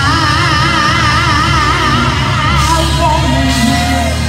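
Gospel praise-and-worship music: a woman's voice holds a long high note with wide vibrato for about two and a half seconds, then moves into shorter, lower notes, over a live band with a steady bass.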